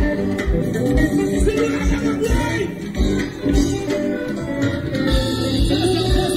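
Live gospel band music played on stage: a steady drum beat about twice a second under held instrumental chords, with some singing.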